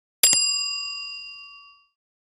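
Notification-bell sound effect: a short double click, then a single bright bell ding that rings out and fades away over about a second and a half.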